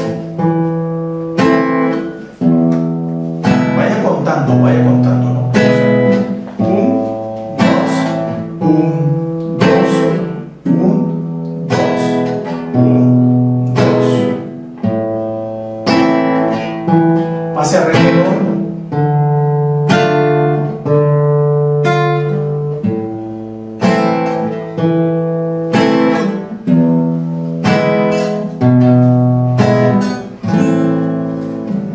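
Nylon-string classical guitar played slowly in a march-style accompaniment, bass notes alternating with strummed chords, moving through the A minor, D minor and fifth-degree chords of A minor. Each stroke rings and fades before the next, in a steady even beat.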